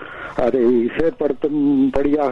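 Speech only: a man talking in Tamil, with a couple of short pauses.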